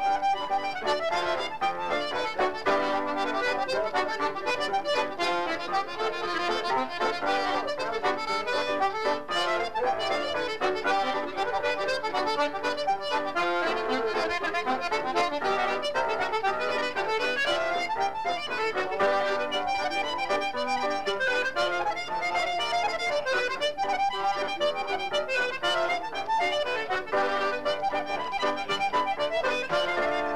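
Accordion playing a fast Irish traditional reel without a break, with piano accompaniment.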